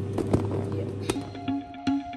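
A few sharp plastic clicks as a food container's snap lid is pressed shut, over a steady low hum. About a second in, light background music with a plucked melody takes over, at two to three notes a second.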